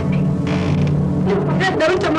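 A low, steady drone from the dramatic soundtrack music. About one and a half seconds in, a woman starts wailing in a wavering, shaking pitch as she cries.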